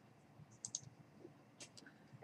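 Near silence with a few faint computer mouse clicks, a couple about a second in and two more near the end.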